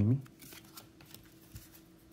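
Faint, sparse handling of a stack of trading cards: a few light ticks and slides as the cards are flipped through one by one.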